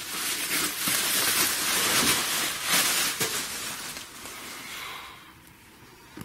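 Bubble wrap crinkling and crackling as it is pulled and peeled off a plastic-bagged comic book by hand, a busy run of small crackles that fades away in the last second or two.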